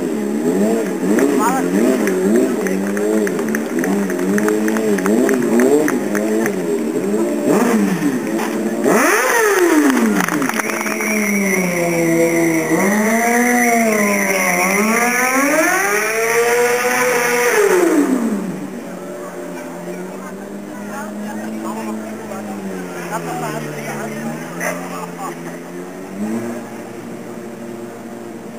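Sport motorcycle engine being revved up and down again and again during stunt riding. The engine is loudest with long high-and-low sweeps in the middle, then drops off and runs quieter near the end.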